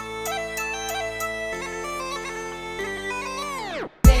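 Background music of bagpipes over a steady drone. Near the end the whole tune slows and falls in pitch, a tape-stop effect, and cuts out.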